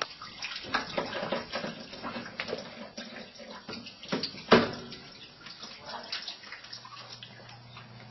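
Residual water trickling and dripping from a sump pump's discharge pipe and check valve as the valve is worked off the line, with small clicks of plastic fittings being handled. The loudest sound is a single sharp knock about four and a half seconds in.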